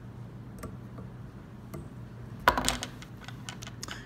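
Clicks and light taps of a metal whip-finish tool being worked while tying off thread on a fly in a vise: a few sparse clicks, then a quick cluster of sharper ones about two and a half seconds in, the first the loudest.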